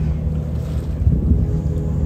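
A cruise boat's engine running steadily, with the rush of water and wind around the moving boat.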